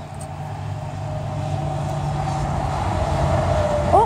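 A semi truck driving along the road, its hum growing steadily louder as it approaches.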